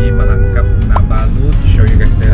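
A man talking over background music, with a heavy, steady low rumble beneath.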